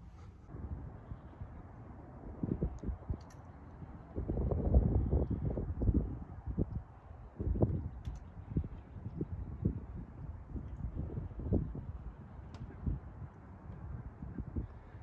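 Wind buffeting the microphone in uneven gusts, mixed with knocks from handling the camera. It is loudest about four to six seconds in.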